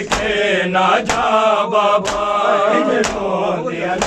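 Men chanting a Punjabi noha lament in unison. Loud slaps of open hands on bare chests (matam) land in time with it, about once a second.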